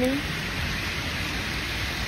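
Steady rain falling, heard as a constant even hiss, with the tail of a man's word at the very start.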